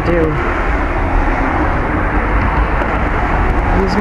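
A car passing close by on the street: a steady, loud rush of tyre and engine noise with a deep rumble.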